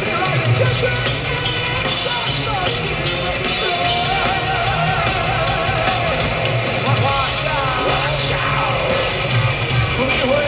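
Heavy metal band playing live through an arena PA: drum kit, distorted guitars and bass, with a sliding melody line on top, heard from the audience.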